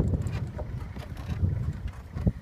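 Low rumble of wind buffeting the microphone.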